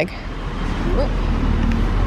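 Low rumble of road traffic, growing louder as a vehicle approaches.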